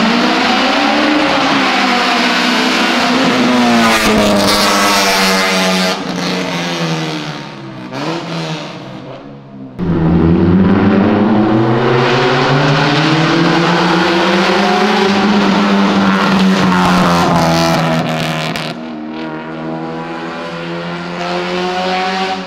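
Car engines revving hard as they pass along a street, the exhaust note rising and falling in pitch through the gear changes. A second loud run starts suddenly about ten seconds in and fades near the end.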